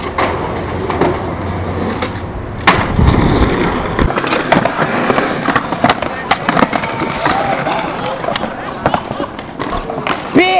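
Skateboard wheels rolling on concrete, with repeated sharp clacks and knocks of the board against the ground. Near the end comes a heavy thud as a skater bails and hits the concrete.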